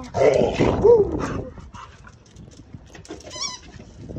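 A dog's short vocal noises, loudest in the first second and a half, made while she holds a red rubber ball in her mouth; a short high squeak follows about three and a half seconds in.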